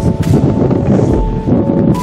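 Wind buffeting the camera microphone in uneven gusts, heavy and low. Soft background music of long held notes runs underneath.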